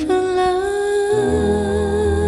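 A woman's voice holding one long note with a slight vibrato, accompanied by a keyboard piano whose low chords come in a little over a second in.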